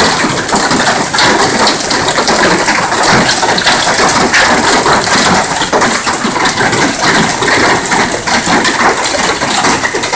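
Hail and rain pelting down, a dense, steady patter of small hard hits over a loud hiss, ticking on car bodywork and the ground.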